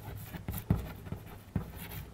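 Chalk writing on a chalkboard: a quick series of short taps and scratches, about six strokes in two seconds.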